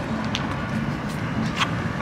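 Steady street traffic noise from passing cars, with a couple of short clicks about a second apart.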